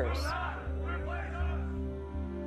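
Soft background music with a low bass pulse about twice a second under held tones. A television news voice trails off over the first second and a half.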